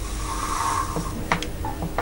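Handling noise from an opened mini PC: a brief rubbing scrape, then a few light clicks and taps as the metal drive-bay bracket and aluminium case are moved by hand.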